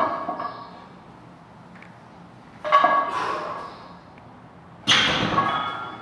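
Loaded barbell with iron plates clanking during a warm-up squat set in a power rack: three sharp metallic clanks that ring briefly, about two seconds apart. The last and loudest comes as the bar goes back into the rack hooks.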